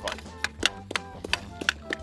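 Hockey stick blade tapping pucks across plastic sport-court tiles while stickhandling, in quick sharp clicks about four a second. Background music runs underneath.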